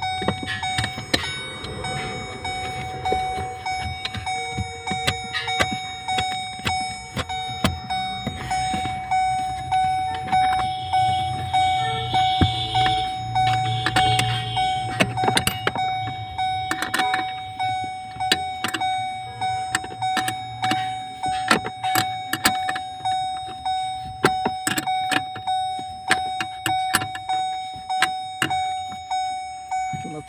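A car's single-note warning chime repeating steadily, with sharp metallic clicks and clinks from a spanner working on the clutch pedal bracket under the dashboard.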